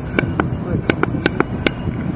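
About seven sharp clicks in quick, uneven succession over a steady low rumble.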